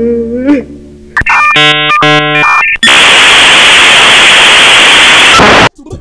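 Dial-up modem connecting: about a second in, switching beeps and tones, then a loud steady hiss that cuts off suddenly near the end.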